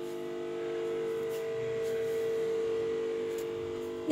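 Steady hum from an electrical appliance, several held tones at once, swelling slightly in loudness toward the middle.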